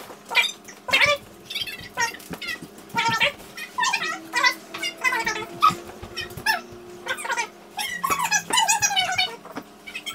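Dogs whining and yipping in many short, high-pitched calls, one after another, coming thicker near the end.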